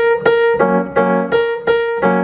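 Grand piano played slowly, a passage of repeated notes: the same high note struck again and again, about three times a second, with lower notes sounding between the strikes.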